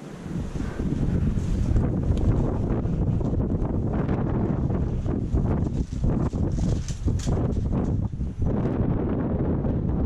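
Wind buffeting the camera microphone: a loud, steady low rumble that sets in suddenly at the start and runs on.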